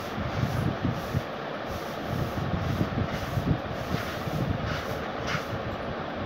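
Steady background hiss with uneven low rumbling and a few brief faint rustles; no speech.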